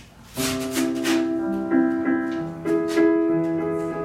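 Yamaha digital stage piano playing slow, held chords, starting about half a second in: the opening bars of a song's piano accompaniment.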